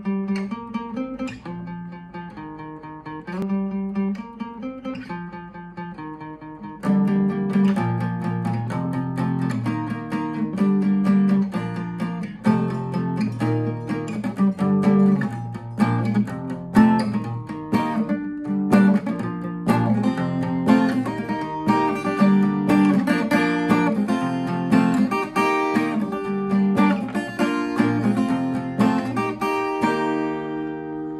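Acoustic guitar capoed at the first fret: a softer picked intro riff on single strings, then from about seven seconds in, fuller and louder strumming through a four-chord progression of F♯ minor, A, E and D.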